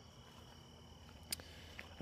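Faint crickets chirping steadily, with one soft click a little after a second in.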